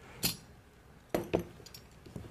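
Small metal parts clinking as a metal mounting brace is taken apart with a screwdriver: three sharp clinks, the last two close together a little past a second in.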